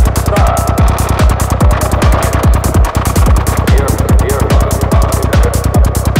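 Progressive psytrance: a fast, steady kick drum with a rolling bass under a held mid-range synth line.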